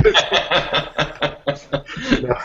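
Men laughing in short, quickly repeated chuckles, heard over a video-call connection.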